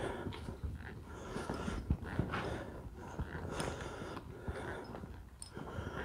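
Horse walking on soft arena sand: quiet, irregular hoof thuds.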